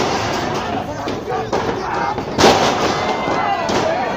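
Wrestlers' bodies slamming onto the hollow wooden ring, a loud booming bang about two and a half seconds in and a smaller one at the start, over spectators shouting.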